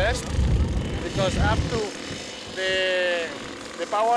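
A man speaking, with a low rumbling noise under his voice for the first half that stops abruptly.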